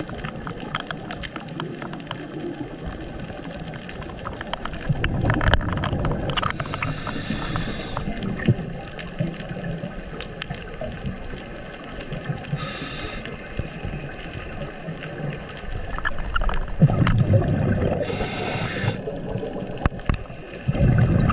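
Scuba regulator breathing heard underwater: a hiss on each inhalation and a burst of bubbling exhaust bubbles on each exhalation, repeating every five or six seconds over a steady underwater hiss.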